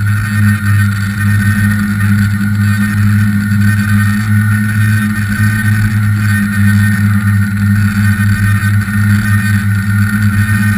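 Electric motors and propellers of a tricopter running steadily in flight, heard from on board the craft: a loud, even drone with a fainter higher whine above it.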